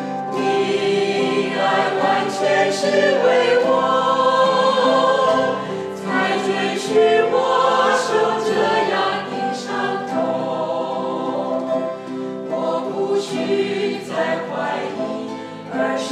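A small group, mostly women's voices, singing a Mandarin Christian worship song together, accompanied by strummed acoustic guitars.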